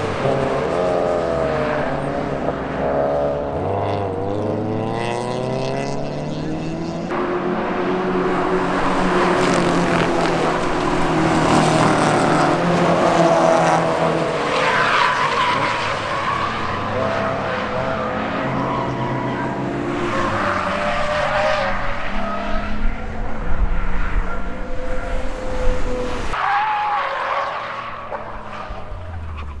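Race car engines, first-generation Mazda MX-5 club racers among them, rev up and down through gear changes as the cars pass, several at once at times. Tyre squeal comes in as cars slide through corners.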